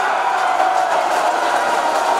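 Football stadium crowd cheering a goal just scored by the home team, a dense, steady wash of many voices.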